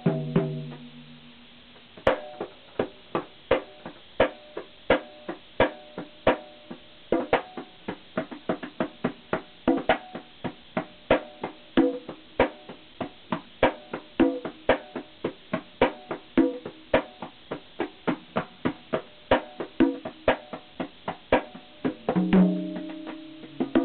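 Set of congas played by hand. A ringing drum tone fades out, then about two seconds in a fast, steady hand-drumming rhythm starts: sharp strokes mixed with ringing open tones.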